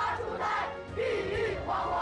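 A large group of children reciting Chinese verse loudly in unison, phrase by phrase, over background music.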